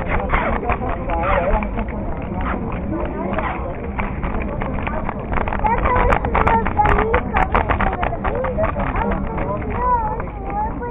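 Several people chatting nearby, over a low rumble of small wheels rolling on pavement, with a run of sharp clicks partway through.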